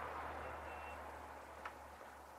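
Quiet room tone: a low steady hum under a faint hiss that slowly fades, with one faint short beep about half a second in and a soft click near the end.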